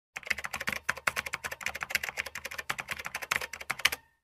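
Rapid typing on a computer keyboard: a fast, uneven run of sharp key clicks that cuts off abruptly at the end.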